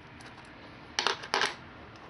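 Sharp metal clinks of a small locking clamp being set onto a steel block: two quick clusters of clicks about a second in, a third of a second apart.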